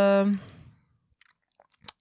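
A woman's drawn-out hesitation sound 'yy' that trails off within half a second. Then a pause of near silence with a few faint clicks, the last and sharpest just before her speech resumes.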